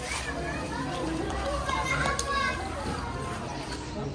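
Small children playing and calling out over the chatter of a seated crowd of adults.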